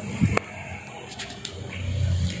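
An Opel Blazer's bonnet being opened by hand: a couple of short sharp clicks from the latch about a third of a second in, then a few faint ticks of handling over a steady low hum.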